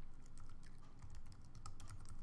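Computer keyboard being typed on: a quick, irregular run of key clicks.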